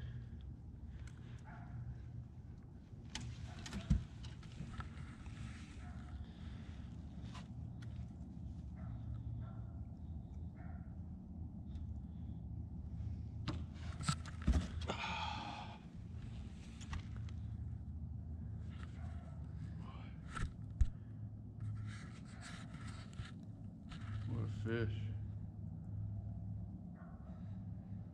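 Handling noises from a fish being unhooked in an aluminium boat: a few sharp knocks and patches of rustling over a steady low hum.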